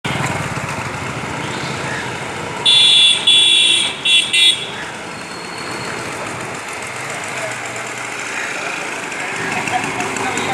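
Street traffic noise with a vehicle horn honking in four short blasts, the first two longer, starting a little under three seconds in and over by about four and a half seconds; this is the loudest sound. A steady motor hum runs under it.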